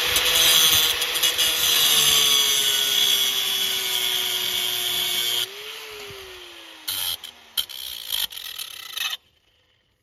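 Electric angle grinder with a cutting disc trimming off the protruding end of a steel bolt through a shovel's socket, its motor whine steady under the grinding. About five and a half seconds in the cutting stops and the motor winds down with a falling whine, with a few short scrapes before it stops near the end.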